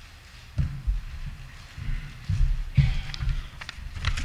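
Microphone handling noise: a handful of dull, low thumps and bumps over about three seconds, as a microphone is picked up and moved into place.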